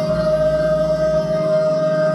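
Male gospel singer holding one long, steady high note into a handheld microphone over sustained instrumental accompaniment.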